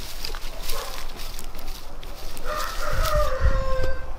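A rooster crowing once, starting about halfway through and lasting about a second and a half, its pitch falling slightly. Under it, scattered light crackles of dry twigs and grass.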